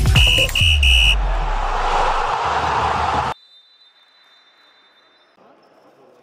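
Electronic intro jingle for a channel logo: three short high beeps over a deep bass, then a whooshing sweep that cuts off suddenly a little after three seconds. Faint sports-hall room noise follows.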